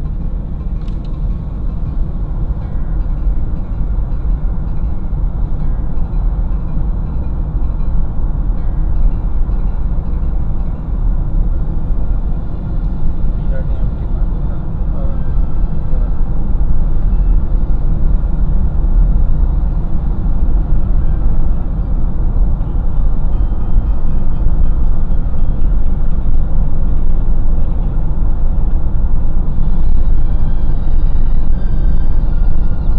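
Steady road and engine rumble of a moving car heard from inside the cabin, deep and continuous, slowly growing louder.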